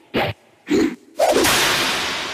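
Opening of a wrestling entrance-theme track: three short punchy sound hits about half a second apart, then a sharp crack whose hissing tail fades away over about two seconds.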